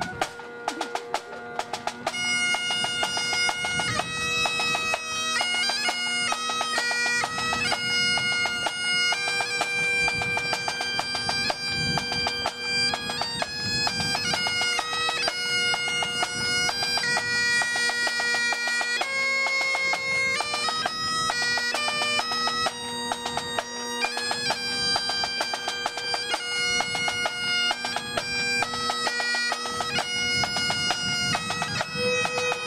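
A pipe and drum band: Great Highland bagpipes playing a tune over their steady drones, with drum beats. The drones sound almost at once, over a few drum strokes, and the melody comes in about two seconds in, the music getting louder.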